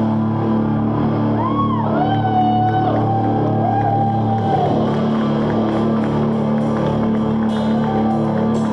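Live rock band playing: guitars and bass hold a sustained chord with the drums dropped out, and a high note bends and then holds from about one and a half to four and a half seconds in. Cymbals and drums come back in near the end.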